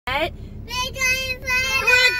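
Children and a woman singing together in long held notes inside a car, with a low cabin rumble underneath. It opens with a quick rising shout of "What?".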